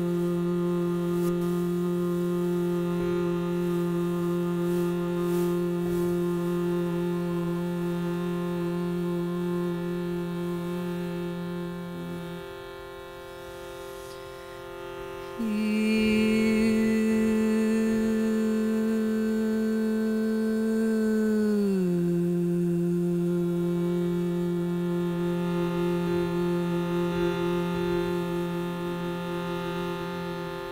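A shruti box's steady reed drone, with a woman singing long held notes over it in an Indian modal scale. She holds one low note for about twelve seconds and pauses a few seconds for breath. Then she takes a higher note that slides back down to the first note about three-quarters of the way through. It is an interval sung to calm agitation.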